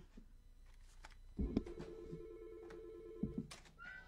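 A telephone ringing faintly: one steady electronic ring of about two seconds, starting just over a second in.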